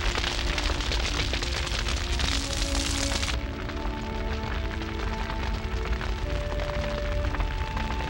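Sound effect of a large fire: a dense crackle over a deep rumble. The crackle cuts off sharply about three seconds in, leaving the rumble under background music with long held notes.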